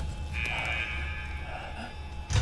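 Sci-fi film sound design: a low steady rumble, and about a quarter-second in a high, strained mechanical whine that lasts about a second.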